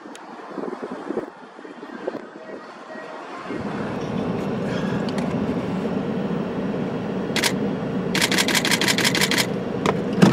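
Street traffic noise, then near the end a rapid burst of camera shutter clicks, about eight a second for just over a second.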